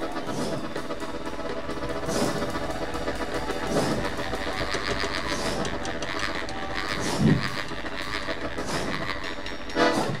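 Live brass-and-percussion band music: held chords from the brass over drums, with several crashes from hand cymbals.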